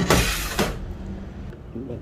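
A ceramic plate slid across the kitchen counter, a brief scrape of about half a second at the start.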